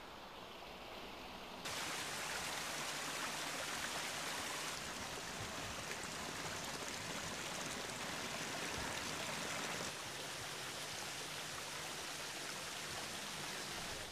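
Water running and splashing over rocks in a landscaped garden stream and small waterfall, a steady rush that gets louder about two seconds in and eases a little near ten seconds.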